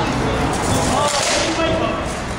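Indistinct voices of people talking over a steady background noise.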